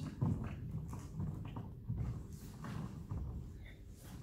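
Hands and trainers knocking and shuffling on a wooden hall floor, about two soft thuds a second, as a man crab-walks sideways on all fours and then gets to his feet.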